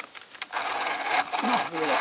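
Hand-cranked two-speed breast drill boring into a wooden board: the bit cutting and scraping through the wood. The drill is in its faster gear, so the bit turns quickly but the crank is much heavier to turn. The cutting starts about half a second in.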